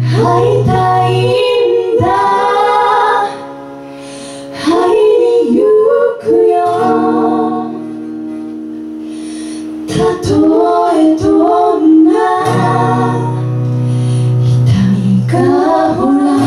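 Live music: female vocals singing phrases with held notes over an acoustic guitar accompaniment, with short gaps between phrases.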